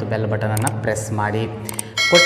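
A man talking, over two short sharp click sound effects from an on-screen subscribe-button animation, one a little over half a second in and one near the end.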